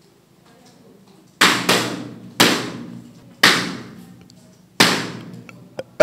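Rubber balloons being burst one after another: five loud, sharp pops spread over about three and a half seconds, each ringing out in the room. Each pop is a contestant rejecting the woman who has just come out.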